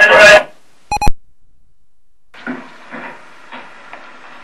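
A short electronic beep with several pitches about a second in, then quiet tape hiss with faint, distant voices starting a little after halfway.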